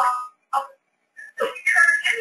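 Speech: a presenter talking in short phrases with brief pauses.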